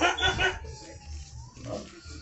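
A person laughing in a few short bursts over the first half-second, then quieter room sound with a faint thin tone.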